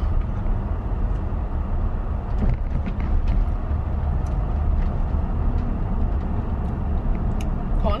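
Steady low rumble of a car's engine and road noise, heard inside the cabin while driving.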